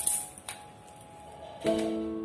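Background instrumental music with sustained, held notes; a new chord sounds near the end. A brief click comes about half a second in.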